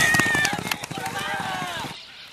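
Hoofbeats of racehorses galloping hard on a dirt track, loudest as they pass close and falling away after about half a second, with people shouting over them.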